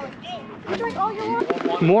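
Mostly people talking, with one sharp click a little past the middle.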